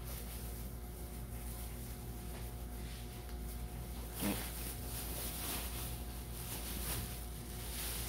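Faint rustling of a thin plastic produce bag being handled, with a steady low hum underneath and one brief louder sound about four seconds in.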